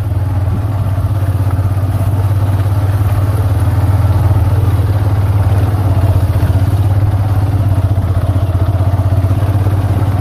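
Motorcycle engine running steadily at low speed while riding, a loud, even low hum with a fast, fine pulse.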